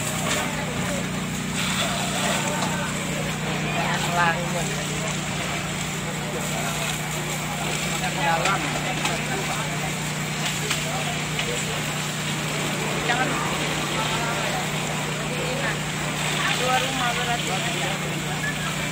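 A pump engine runs steadily, feeding fire hoses whose water jets spray with a constant rushing noise. Scattered voices of firefighters and bystanders come and go over it.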